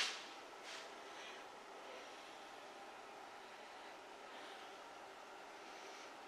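Quiet room tone with a few faint soft sounds.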